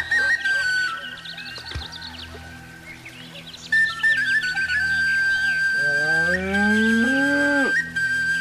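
A light whistle- or flute-like melody with chirping birdsong. Near the end comes one long cow moo that rises in pitch and then cuts off.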